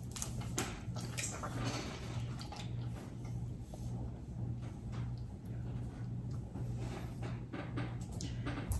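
Boiled crawfish shells being cracked and peeled by hand: a scatter of faint crackles and small clicks, over a steady low hum.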